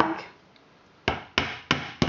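Claw hammer gently tapping plastic extra pegs into the holes of a plastic round knitting loom: a quick run of sharp taps about a third of a second apart in the second half.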